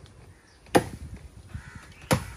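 A single sharp chop of a hand blade biting into a tree branch, about three-quarters of a second in, one stroke in a slow, steady series of strokes.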